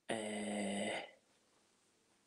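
A man's voice holding a steady hum, a drawn-out "mmm" lasting about a second, then stopping.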